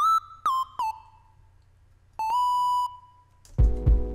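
Distorted sine-wave synth lead with portamento: three short notes, each sliding into its pitch, then a longer note gliding up slightly. Near the end the beat comes in, with a kick drum pulsing under the lead.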